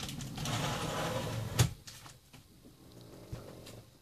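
Scratchy rustling handling noise for about a second and a half, ending in one sharp click, then only a few faint ticks.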